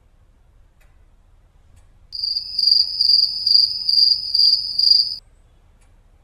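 Crickets chirping in a high, steady trill pulsed about twice a second for about three seconds, starting about two seconds in, after a near-silent start. This is the stock 'awkward silence' crickets sound effect.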